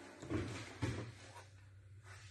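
Two short dull thumps about half a second apart, then a faint steady low hum.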